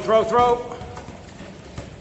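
A voice calling out in a quick run of short syllables during the first half second, then boxing gloves landing with soft thuds as two men spar.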